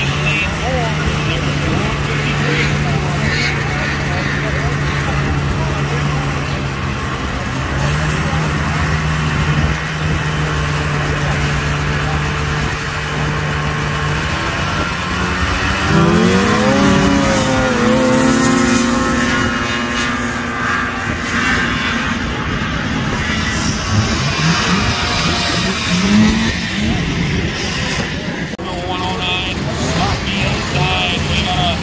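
Vintage two-stroke snowmobile engines idling at a drag-race start line, then revving up sharply in a rising whine as the sleds launch about sixteen seconds in. The engine note swoops up and down through the run, with more revving a few seconds later.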